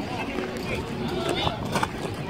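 Background sound of an outdoor ballgame: faint, scattered distant voices of players and onlookers over a steady murmur of outdoor noise, with no single loud event.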